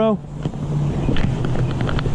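A motor vehicle engine idling nearby, a steady low hum under a wash of outdoor noise, after a man's short spoken greeting at the very start.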